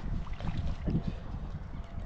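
Shallow water splashing and sloshing around a landing net as a muskie is unhooked in it, over a low rumble of wind on the microphone.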